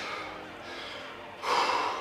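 A man breathing hard while resting, winded after plank holds. Soft breathing gives way to one deep, loud breath about one and a half seconds in.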